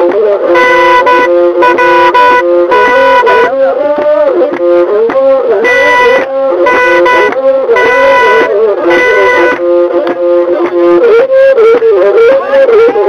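Ethiopian azmari music: a masinko (one-string bowed fiddle) plays a wavering melody full of pitch slides, over short repeated chords that come about once a second in runs of three or four.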